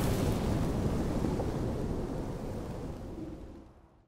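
The decaying rumble of a cinematic boom sound effect, dying away steadily and fading out shortly before the end.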